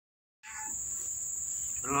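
Steady high-pitched chirring of insects, with a voice saying 'Hello' near the end.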